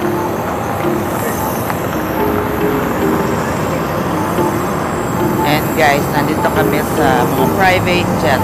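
Steady roadside traffic and wind noise. From about five and a half seconds in, voices are heard over it, with faint music underneath.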